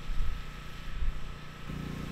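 Outdoor wind buffeting the microphone: an uneven, gusty low rumble with a faint steady thin tone above it.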